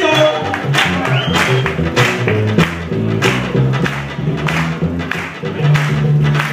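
Live Cuban son-style band playing: a plucked tres guitar line over upright bass and congas, with a steady beat struck throughout.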